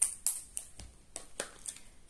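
Plastic sealing film being pulled and torn off a small cardboard product box by hand: irregular crinkling crackles and snaps, the loudest at the very start and again about one and a half seconds in.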